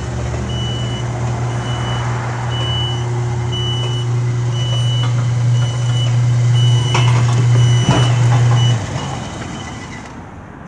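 Electric gate operator's motor running with a steady hum while a warning beeper repeats short high beeps about every half-second. Near the end there are a couple of clunks, then the motor cuts off and the beeping stops.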